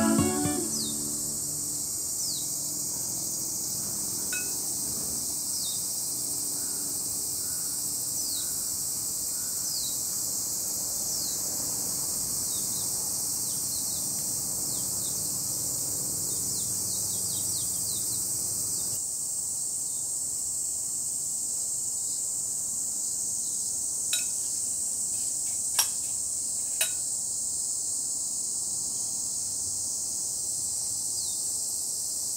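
A steady, high-pitched chorus of summer insects with short, repeated falling chirps over it. A few sharp clicks sound near the end.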